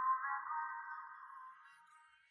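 Karaoke backing-track music: a chord of held high notes that slowly fades away.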